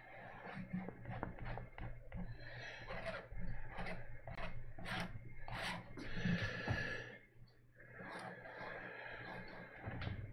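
Fingers dabbing and smearing oil paint on a stretched canvas: a run of soft taps and rubbing strokes over a low steady hum.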